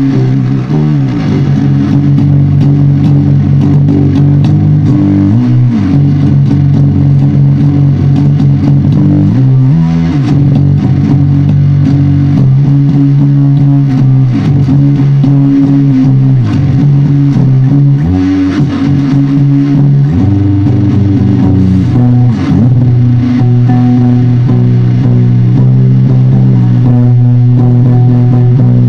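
Electric guitar played loud through heavily distorted amplifier cabinets: a slow, heavy riff of held low chords that shift every couple of seconds, with pitch slides between some of them.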